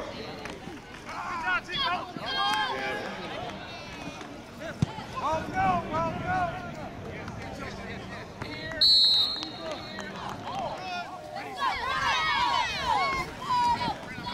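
Voices calling out across a football field, with a referee's whistle blown once, briefly, about nine seconds in, the loudest sound here. A single sharp knock comes about five seconds in.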